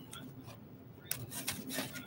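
Scissors cutting the packing tape on a small cardboard box, with the blade scraping and rubbing on the cardboard. It is faint at first, then becomes a run of short scraping strokes from about a second in.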